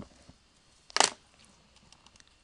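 Felt-tip marker writing on paper: a few faint taps near the start and one louder, short scratchy stroke about a second in.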